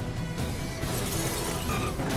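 Trailer music with window glass shattering about a second in.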